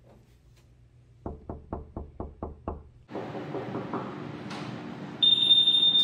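Seven quick knocks on an apartment door, about four a second, starting about a second in. Near the end, a loud, steady high-pitched beep sounds over the room noise.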